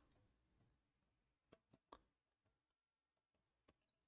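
Near silence with a few faint clicks from plastic miniature-kit parts being handled and clipped off a sprue: two about a second and a half in, half a second apart, and one more near the end.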